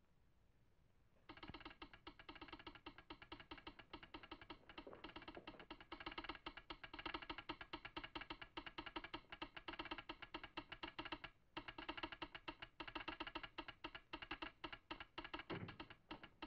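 Telegraph sounder in a wooden resonator box clicking out an incoming Morse code message: rapid runs of sharp clicks starting about a second in, with a brief break about two-thirds of the way through.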